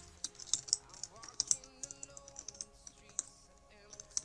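Typing on a computer keyboard: irregular key clicks, over quiet background music.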